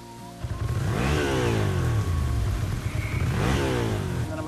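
Motorcycle engines: a steady low engine rumble sets in about half a second in, with the engine note swelling and gliding in pitch twice, about a second in and again near the end.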